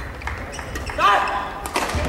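Badminton rally in a large hall: racket strings hitting the shuttlecock with sharp cracks, the strongest near the end, and a player's brief shout about a second in that rises and falls in pitch.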